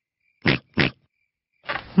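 A cartoon pig character giving two quick snorts, one after the other. Near the end a man's voice begins.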